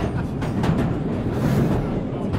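London Underground train running, heard from inside the carriage: a steady low rumble with rattling clicks from the wheels and carriage.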